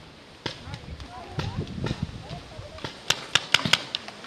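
Paintball marker shots: a few scattered sharp pops, then a quick burst of about five near the end.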